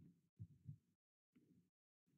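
Near silence on a video-call line that cuts in and out, with two faint low thumps about half a second in.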